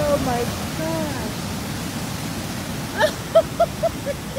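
Heavy surf breaking on a beach, a steady roar of crashing waves. Voices cry out over it in the first second, and a quick run of short, laugh-like bursts comes about three seconds in.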